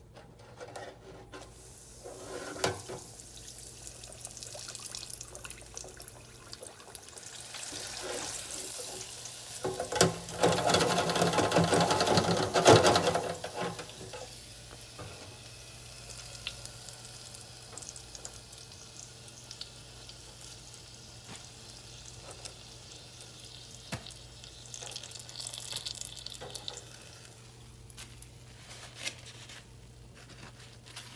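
Countertop fryer running with a steady hum while breaded green tomato slices cook. From about ten to fourteen seconds in there is a louder stretch of hissing, with a few scattered clicks and knocks.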